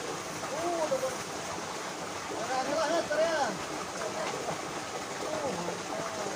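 High-pitched voices calling out in short bursts a few times, over a steady rushing hiss.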